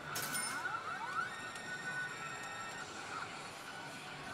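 Karakuri Circus pachislot machine playing its electronic effect sounds: a sudden burst as the screen flashes, then quick rising electronic sweeps and bright held tones, with the machine's music. Busy pachinko-parlour din underneath.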